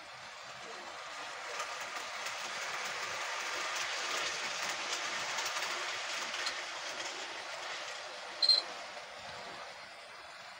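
Model train running on its track with a rattling, clicking rush of wheels that grows louder as it passes close by and then fades. A brief, sharp high squeak comes near the end.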